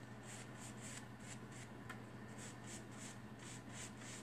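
Paintbrush dry-brushing chalk paint over a plywood board: faint, quick, regular scratching strokes of the bristles on the wood.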